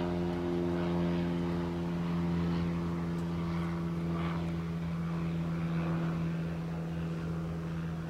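An engine running steadily, a constant hum that holds one pitch without rising or falling.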